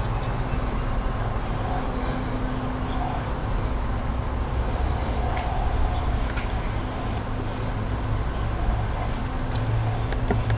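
A steady low mechanical hum over a continuous outdoor rumble, with no breaks or changes.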